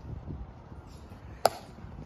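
A single sharp click about one and a half seconds in, from the Tomb sentinel's drill as he stands and turns at the end of his walk, over a low rumble of wind on the microphone.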